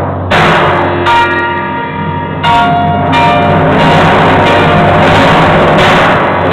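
Timpani and piano playing together: three struck chords with ringing pitched tones, about a second apart, then a louder, sustained passage over a steady low drum tone.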